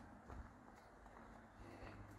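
Near silence: a faint low background rumble.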